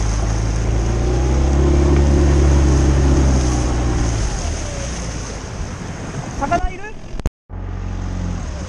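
Small outboard motor pushing an inflatable boat, running steadily and then easing off about four seconds in, with water rushing along the hull. The sound cuts out abruptly for a moment near the end.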